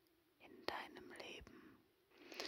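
A woman whispering softly close to the microphone, starting about half a second in, with a couple of small clicks.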